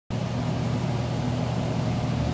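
A steady mechanical hum: a low drone with an even rushing noise over it, unchanging throughout.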